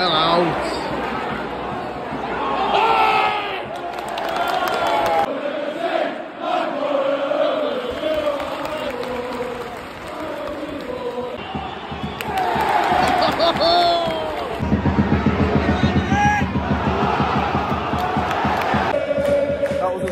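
Stadium football crowd singing, chanting and shouting. About three-quarters of the way through, a fast run of rhythmic low thuds joins in.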